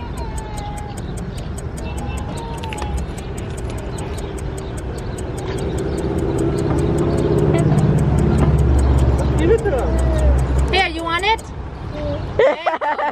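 Street traffic: a motor vehicle's low engine rumble swells over several seconds and drops away near the end, under a fast, even ticking. A short voice cry comes just before the end.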